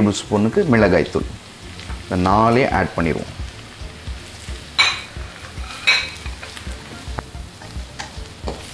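Onions and spice powders frying with a steady sizzle in a non-stick pan, stirred with a spatula; two brief sharper knocks of the spatula against the pan come about five and six seconds in.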